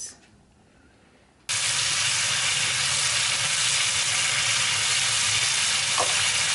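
Prawns sizzling as they fry in a pan: a steady, even sizzle that starts abruptly about a second and a half in, after a short near-quiet stretch.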